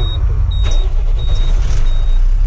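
A truck's diesel engine idling, heard from inside the cab as a steady low rumble, with a high thin beep repeating about every 0.7 seconds and a single click partway through.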